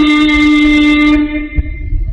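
A man's voice holding one long chanted note at a steady pitch, fading out about a second and a half in, followed by a brief low knock.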